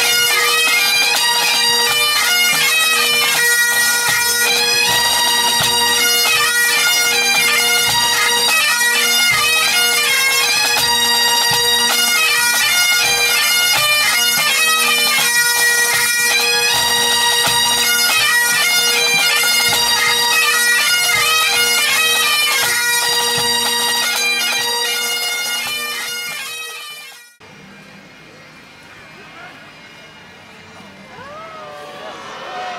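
Pipe band playing: Great Highland bagpipes with their steady drones under the chanter melody, and snare and bass drums beating underneath. The music fades and stops about 27 seconds in, leaving quieter outdoor background sound.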